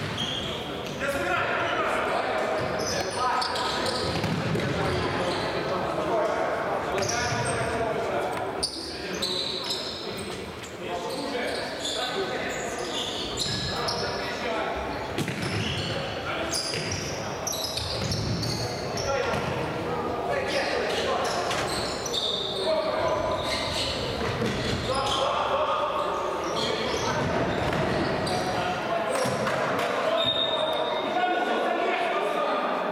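Futsal match play in a sports hall: players calling out to one another over the thuds of the ball being kicked and bouncing on the hard court floor, with the room's echo.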